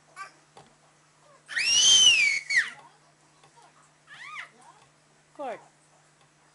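Baby's loud, very high-pitched squeal lasting about a second, rising and then falling in pitch, followed by two shorter squeaky vocalisations, the last one sliding down in pitch, as she lies on her tummy learning to crawl.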